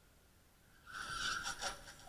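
A scooter colliding with a car and going down on the road: a sudden burst about a second in, a held high tone with several sharp knocks and clatter, lasting about a second.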